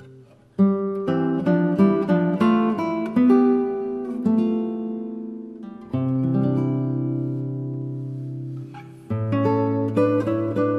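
Slow, calm acoustic guitar instrumental: a run of plucked notes begins about half a second in, a low note rings out and fades from about six seconds, and new notes come in just after nine seconds.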